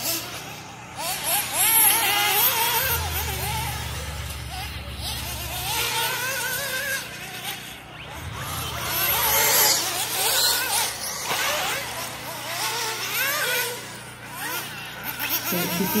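Nitro engine of a 1/8-scale RC buggy (Alpha Dragon 4) running at high revs, its pitch rising and falling quickly with the throttle through the laps.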